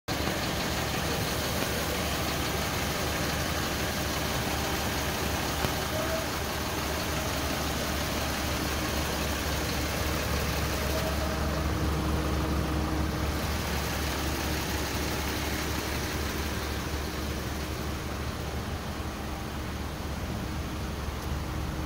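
Ford Transit van's engine idling steadily, a constant low hum under an even hiss.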